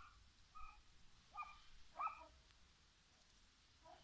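A dog barking faintly, three short barks in the first half, against near silence.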